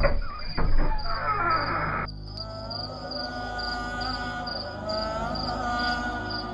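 Crickets chirping in a steady rhythm, about two chirps a second. A rushing noise opens the first two seconds, then gives way to a sustained music drone.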